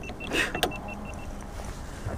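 A small electric motor whirring steadily, with a quick run of short, high, evenly spaced beeps in the first second and a brief laugh.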